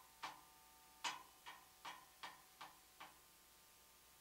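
Mallets striking the metal bars of a mallet keyboard softly in a steady beat of about two and a half notes a second, the bars ringing on between strokes; one beat is skipped about half a second in, and the strokes stop about three seconds in.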